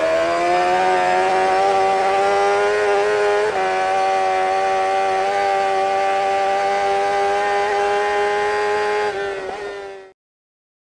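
An engine held at steady high revs, its pitch climbing slightly at first and dipping once a few seconds in, then fading out near the end.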